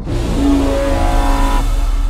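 Loud trailer sound effect over a low steady rumble: a sudden rush of noise, with a pitched tone building inside it that fades out about a second and a half in.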